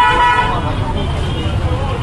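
A vehicle horn honks once, briefly, at the very start, over a steady low rumble of road traffic.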